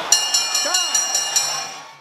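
Boxing ring bell struck rapidly several times, about four strikes a second, its ringing fading out near the end: the bell marking the end of the final, twelfth round.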